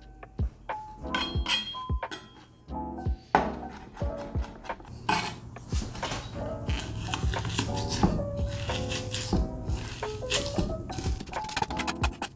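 Chef's knife chopping and tapping on a wooden cutting board as garlic is smashed and minced, the strikes coming fastest in the middle stretch, over background music.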